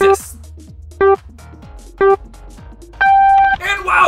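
Race-start countdown beeps: three short beeps a second apart, then a longer, higher-pitched beep signalling the start.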